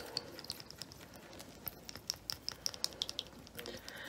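Wooden stir stick stirring Marabu Easy Marble paint in its small bottle: faint, irregular quick clicks and scrapes of the stick against the bottle.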